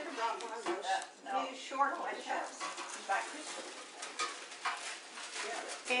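Low, murmured talking voices, with a few light clicks and taps in between.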